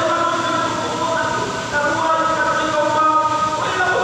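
A man's voice chanting into a microphone in long, held melodic notes that step from one pitch to the next.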